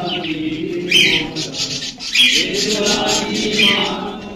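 A group of voices singing a slow hymn together in long held notes, while a bird chirps repeatedly, about once every second and a half.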